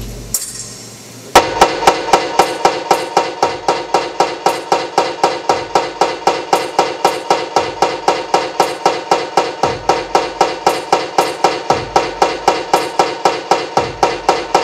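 Electronic music: after a brief fading lull, a hard, even clanking beat of about four hits a second, each hit with a ringing pitch, starts just over a second in and keeps going.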